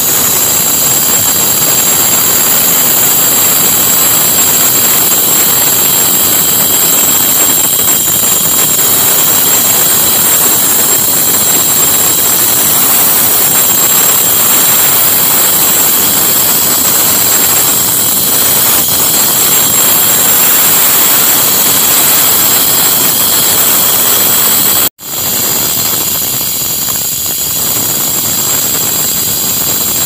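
Handheld electric angle grinders cutting carved stone lattice panels: a loud, steady high whine over a grinding hiss. The sound cuts out for an instant near the end, then carries on a little quieter.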